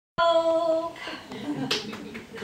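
A voice holds one steady note for under a second, then gives way to soft murmured voices, with a sharp click near the end.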